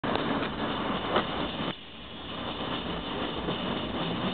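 Steady road and engine noise inside a car cabin. Just under two seconds in it drops suddenly quieter, then slowly builds back up.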